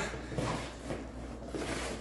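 Faint rustling and soft knocks of a cardboard box being handled and lifted, over low room tone.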